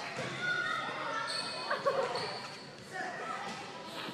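Echoing gymnasium ambience: distant children's voices and a basketball bouncing on the wooden court.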